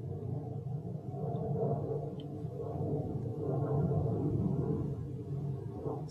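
Low rumble of a jet plane flying overhead, heard from inside a room. It swells twice and then eases off. The vlogger takes it for a firefighting jet.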